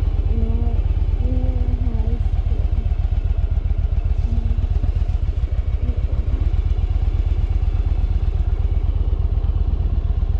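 Yamaha V Star 1100's air-cooled V-twin engine running at idle or low speed with a rapid, even pulsing beat.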